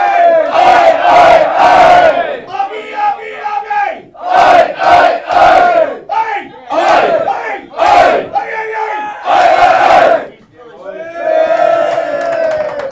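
A roomful of men singing a chorus together at full voice, in loud phrases of a second or two with short breaks between and a brief lull near the end.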